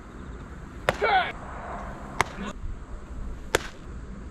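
Three sharp pops of a baseball smacking into a leather glove, about 1.3 s apart. A brief shout follows the first.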